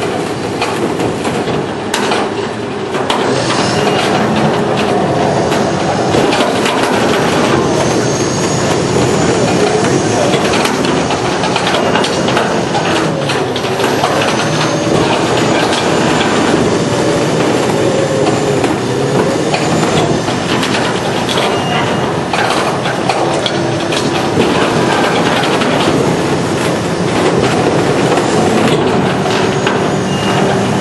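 Aluminum walking floor of a trailer running: the slats slide and clack in a steady, continuous clatter of knocks, with a wavering hum underneath.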